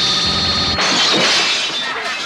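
Cartoon electric-shock sound effect: a steady, buzzing zap that breaks, just under a second in, into a loud crash of shattering and breaking as the shock blows the room apart.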